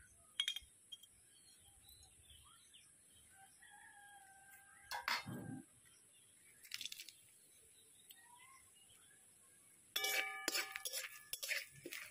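A rooster crows once, a call of about a second and a half, some four to five seconds in, over faint chirps from small birds. In the last two seconds a metal spatula clatters and scrapes against an aluminium kadai, ringing the pan, as whole spices go into hot ghee.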